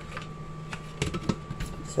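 A steady faint hum with a few light clicks and knocks about a second in, from hands handling things on a kitchen counter, just before the blender is switched on.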